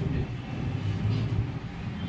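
Steady low background rumble with no speech.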